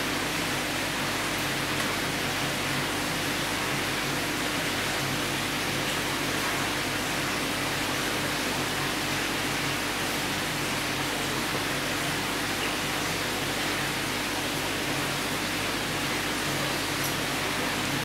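Steady, even hiss of background noise with a faint low hum, unchanging throughout.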